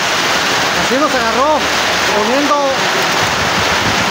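Heavy rain falling steadily onto the shed roof and the waterlogged yard, a loud, even hiss.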